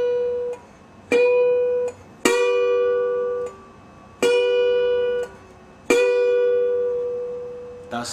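Resonator guitar in open G tuning played with a bottleneck slide at the twelfth fret: four separate notes picked with the fingers, each ringing clearly for about a second before being damped, the last left to fade out.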